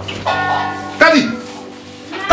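A ringing, bell-like chime of several steady tones sounds together, and a short voice cuts in about a second in.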